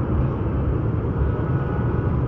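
Dense city road traffic: a steady din of many engines and tyres, with no single vehicle standing out.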